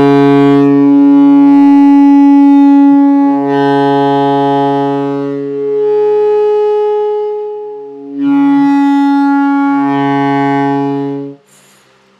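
Alto saxophone playing overtone exercises: long sustained tones on one low note's series, moving between the fundamental and the overtones an octave and a twelfth above it. The playing comes in three long phrases with short dips at about three and eight seconds in, and stops shortly before the end.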